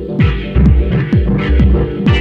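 Dub techno track: a steady throbbing bass pulse with a falling low drum hit about twice a second, driven synth chords and short hi-hat ticks.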